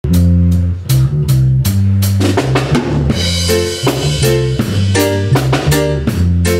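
A live band plays an instrumental intro. The drum kit keeps a steady beat with kick, snare and rimshots under a low bass line, with electric guitar and keyboard, and a cymbal crash about halfway through.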